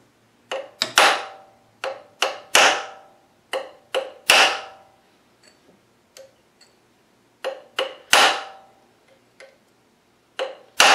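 Hammer striking a steel number punch held on a metal lathe dial, stamping the zero mark: taps in groups of three, each group ending with the hardest blow, four groups in all, every strike ringing briefly. Two lighter taps come in the lull between the third and fourth groups.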